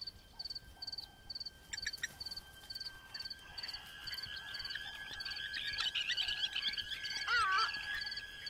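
Grassland wildlife ambience: short high chirps repeat about twice a second over a steady high drone, and birds sing over the second half, loudest near the end.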